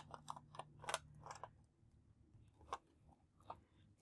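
Faint small plastic clicks and rattles as a clear LEGO canopy piece is fitted and clipped onto the model's cockpit: a quick cluster in the first second and a half, then a couple of single clicks.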